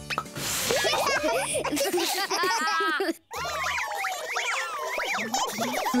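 Cartoon characters giggling and laughing over light children's background music. The sound drops out briefly a little past three seconds, then the music and playful voices return.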